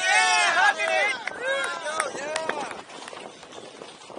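Spectators beside the course shouting and cheering at close range as the rider passes, several high voices overlapping and fading out after about three seconds. A few sharp clicks come in the middle, and a quieter rushing noise of riding over dirt follows.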